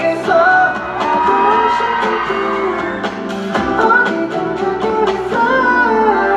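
K-pop track with a boy group's vocals singing the melody over continuous backing music.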